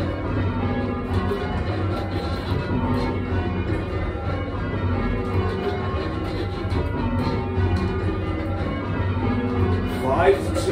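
A ring of eight church bells rung in call changes, stroke after stroke in a steady, even rhythm, heard from the ringing chamber below the bells.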